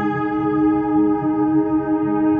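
Instrumental ambient music: a steady held chord with a soft, repeating low pulse beneath it.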